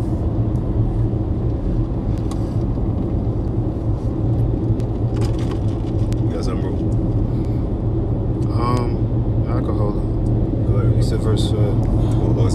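A steady low rumble, with a faint voice breaking in briefly about nine seconds in.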